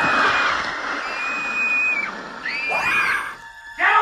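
A child screaming in high, drawn-out cries: one held scream at the start, a second about a second in, and a cry that rises and falls near three seconds in, with music underneath.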